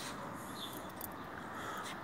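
Quiet outdoor ambience: a steady background hiss with a faint short falling chirp from a small bird about half a second in, and a few light clicks.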